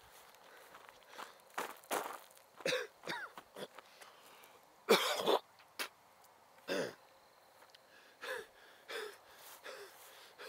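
A person breathing hard in irregular gasps and coughs while walking through grass, the loudest gasp about five seconds in.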